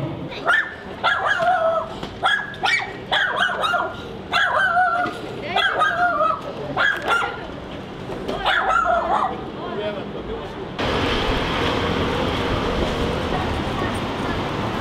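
A dog yelping and whining: about eight short, high calls, many falling in pitch, over the first nine seconds. Near the end the sound switches suddenly to a steady outdoor noise hiss.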